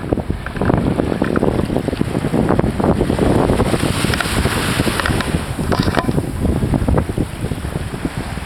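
Wind buffeting the camera microphone, a loud, irregular rumble that rises and falls in gusts, over the wash of small waves on the sea.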